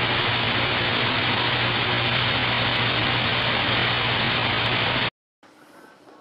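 A steady hissing noise with a low hum underneath, which cuts off suddenly about five seconds in and leaves only a faint sound.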